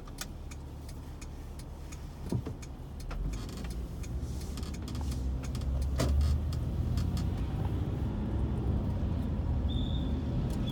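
A car driving along a street: a steady low rumble of engine and road noise that grows louder a few seconds in, with scattered light clicks and rattles.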